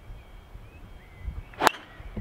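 A golf driver striking a ball off the tee: one sharp, loud crack about one and a half seconds in.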